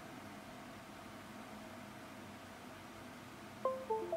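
Faint steady room hiss. Near the end comes a short falling chime of a few clean notes from the Windows PC, the USB device sound given as the iPhone drops off and comes back in recovery mode.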